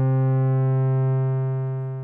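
A sustained low synthesizer note: a Moog Mother-32 sawtooth through the Rossum Evolution transistor-ladder low-pass filter with its Species overdrive pushed high, so the resonant peak is damped away. The pitch holds steady while the level swells a little and eases off near the end.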